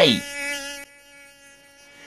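A mosquito's buzzing whine, held steady on one pitch, that drops much quieter a little under a second in.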